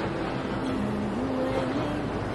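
Steady rushing of sea surf, with a soft, slow background melody of held notes stepping gently in pitch.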